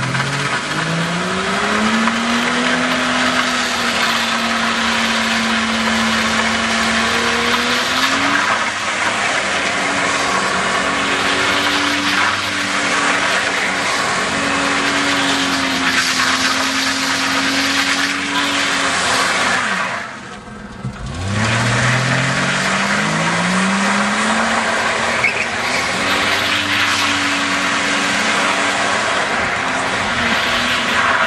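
Nissan Skyline R31's straight-six engine held at high revs during a burnout, with the rear tyres spinning and squealing. The revs climb near the start and hold steady, drop away briefly about two-thirds in, then climb again and hold.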